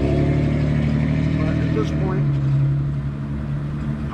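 A motor vehicle's engine running close by in a steady low hum that dips slightly in pitch about halfway through and dies away near the end.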